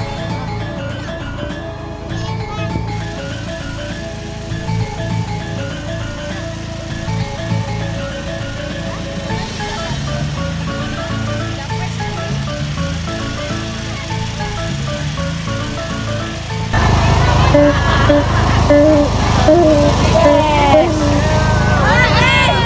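Music: a melodic tune of held notes over a steady bass line. About seventeen seconds in it gets louder, with a wavering, sliding lead line on top.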